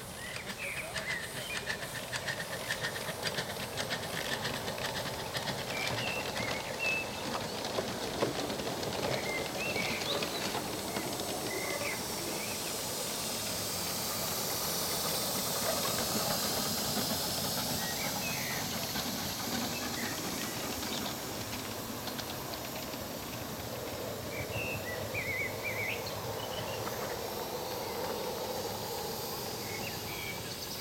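Live-steam 5-inch gauge model steam locomotives running on ground-level track, with steady steam hissing and wheel noise on the rails. It grows louder around the middle as a train passes close by.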